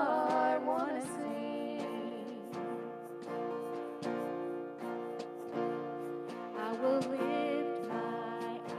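Live worship band music: acoustic guitars strummed in a steady rhythm under a woman's lead vocal, which ends a line about a second in and comes back near the end, with an instrumental stretch between.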